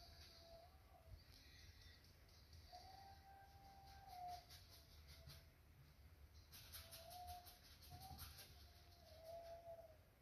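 Near silence: faint room tone, with a few faint, drawn-out whining tones now and then.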